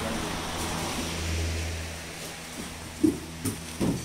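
Electric pedestal fan running close by, a steady rush of air with a low motor hum that eases as the sound moves away from it, with a few short thumps near the end.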